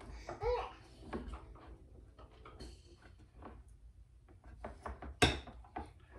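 Quiet handling of a can of maple syrup and a measuring cup on a wooden counter, ending in one sharp knock about five seconds in as the can is set down. A brief voice-like sound that bends in pitch comes about half a second in.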